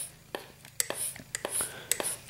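Mityvac MV8500 hand pressure/vacuum pump being squeezed on its pressure setting: a quick series of sharp clicks with soft hisses of air. The fuel tank will not pump up, a sign of a leak somewhere in the tank.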